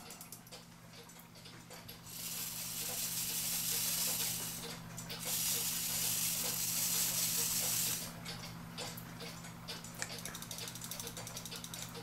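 Handling of a cuckoo clock's brass movement during assembly: two long hissing noises of a couple of seconds each, then a run of light metallic clicks, over a low steady hum.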